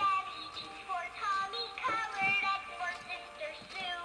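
Animated plush bunny toy singing a song in a high voice over music.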